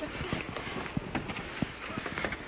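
Footsteps of people climbing over weathered driftwood planks and beams: irregular knocks of shoes on the wood.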